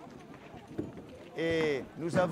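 Low background bustle with a few faint knocks, then about halfway through a person's voice calls out in one short, drawn-out sound.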